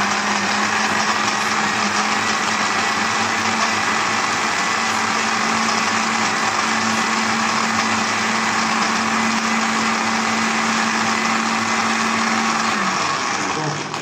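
Electric countertop jug blender running at a steady speed, blending chunks of lemon and ginger in warm water. It switches off right at the end.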